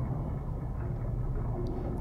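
A steady low rumble, a sound effect from the anime episode's underwater scene.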